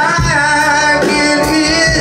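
Live country-rock band playing loudly: electric guitars, bass and drums, with gliding melodic lines over a steady low end.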